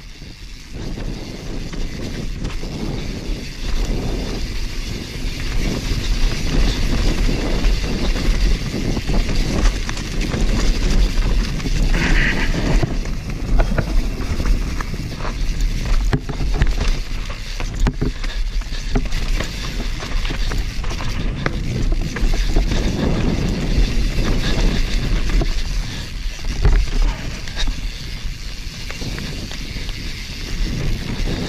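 YT Capra enduro mountain bike descending a dirt forest trail: tyres rolling over dirt, roots and stones, with frequent knocks and rattles from the bike over bumps and wind rushing on the camera microphone. A brief high squeal about twelve seconds in.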